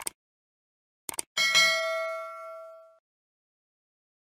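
A short click, then a brief rustle and a bell-like ding sound effect that rings with several clear tones and fades away over about a second and a half.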